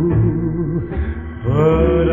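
1955 doo-wop vocal-group record playing: held harmony chords over a low band, with a new chord sliding in about a second and a half in.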